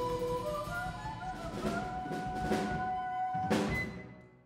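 Live jazz combo with piano, drum kit, cello and voice playing the close of a tune: long held notes over drum hits, with a last crash about three and a half seconds in, after which the music stops.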